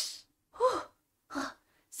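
A woman's voice acting out being out of breath: a sharp breathy gasp, then two short panting huffs.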